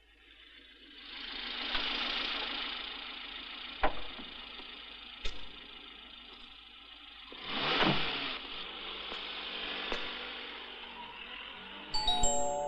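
Cars passing on a street: two swells of traffic noise, one about a second in and one around eight seconds, with a few sharp knocks in between.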